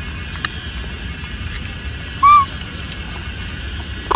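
A baby macaque gives one short coo call, rising then falling in pitch, about two seconds in, over a steady background hiss.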